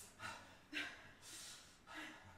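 A person breathing hard during exercise: a few quick, faint breaths in and out.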